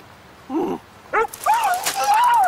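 A man yelping in pain from an anti-bark shock collar on his neck, in dog-like cries. First a short low cry, then a brief yelp, then a long, wavering, higher-pitched cry from about halfway through.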